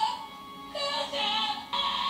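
Anime soundtrack playing back: dramatic music with a high, wailing voice that comes in short broken phrases from just under a second in.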